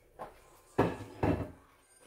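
Kitchen handling noises: a light click, then two knocks about half a second apart.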